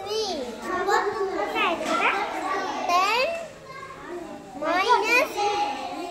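A young boy talking, with a pause of about a second midway.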